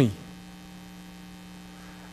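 A steady, faint electrical hum of two low tones held level, heard in the gap after a man's spoken word ends at the very start.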